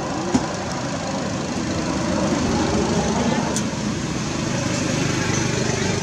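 Indistinct background voices of people talking over a steady outdoor rumble, with one sharp click about a third of a second in.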